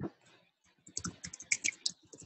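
Typing on a computer keyboard: a quick run of key clicks beginning a little under a second in, as a username is entered into a login form.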